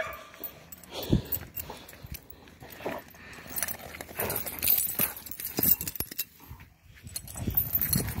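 Dogs at tug-of-war play, a pit bull and a larger dog, making scattered short sounds as they tussle over the toy.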